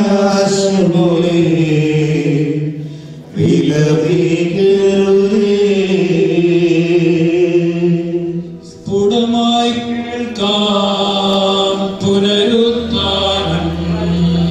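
A voice chanting a slow liturgical hymn in long held notes, sung in phrases of several seconds with brief breaks between them.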